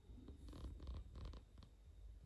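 Near silence: faint low room rumble with a few soft rustles, typical of a handheld camera being moved.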